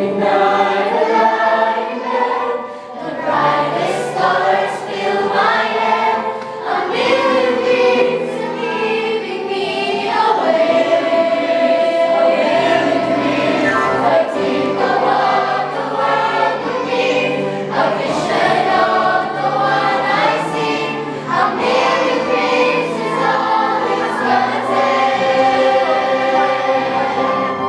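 A youth choir singing a song together, many voices at once, continuously.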